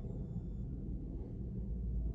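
Car-cabin room tone: a low steady rumble and nothing else.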